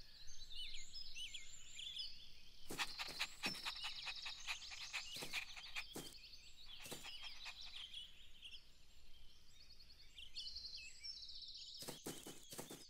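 Faint outdoor ambience of small birds chirping and trilling, scattered through the whole stretch, with a handful of short taps or clicks in the middle.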